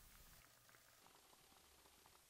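Near silence: only a very faint hiss with a few tiny faint ticks.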